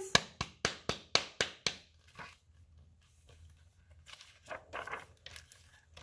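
A person clapping their hands about seven times in quick, even succession, roughly four claps a second, then stopping.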